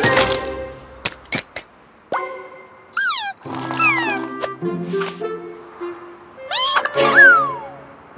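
Cartoon soundtrack: background music under short, squeaky, wordless creature vocalizations that slide up and down in pitch. There are a few quick clicks about a second in and a long falling glide near the end.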